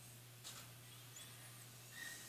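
Near silence: room tone with a steady low hum, a faint soft scrape or tick about half a second in, and a few faint high chirps.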